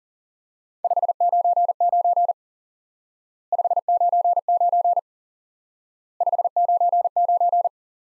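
Morse code sent as a steady beeping tone at 40 words per minute: the signal report '599' keyed three times, each group about a second and a half long with a short gap between.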